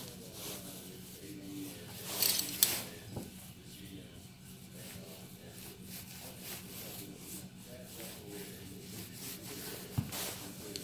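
Soft handling sounds of hands, a metal spoon and thin wonton wrappers on a wooden cutting board, with one louder rubbing rustle about two seconds in.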